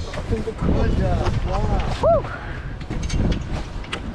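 Indistinct voices of people on the deck over a steady low rumble of wind buffeting the microphone aboard the boat.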